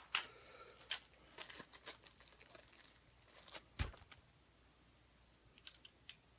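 Faint rustling of a fabric drawstring bag and small clicks as a compact phone tripod is pulled out and handled, with a single low thump a little before four seconds in.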